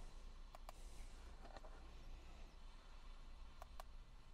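Faint clicks of the buttons on a handheld OBD fault code reader being pressed, a few separate presses, some in quick pairs, over a low background hum.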